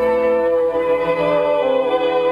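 Soundtrack music: one long held note carried across the whole stretch, over lower notes that shift a couple of times.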